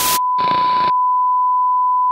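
Steady, unbroken test-tone beep of the kind played with TV colour bars, a single pure pitch. Two short bursts of static hiss cut across it in the first second.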